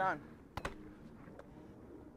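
A voice says a single short word, then two sharp taps come close together about half a second later, over quiet outdoor background.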